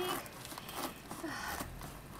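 Faint rustling and crinkling of packaging being handled as a parcel is opened by hand.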